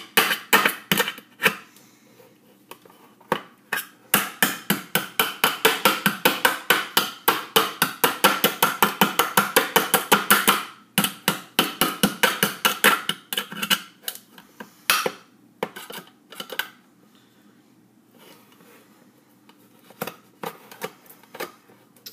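A kitchen knife stabbed again and again into the metal lid of a tin can to punch it open: sharp metallic strikes, a few at first, then a fast steady run of about four or five a second through the middle, thinning out to scattered single stabs near the end.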